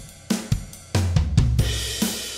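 Logic Pro X's SoCal drum kit playing back a groove of kick, snare, hi-hat and cymbals, with several kick and snare hits in the first half and a cymbal ringing out from about halfway through. The kit is parallel-compressed: the dry drums are blended with the compressed signal through the compressor's mix knob, keeping the natural peaks and tails.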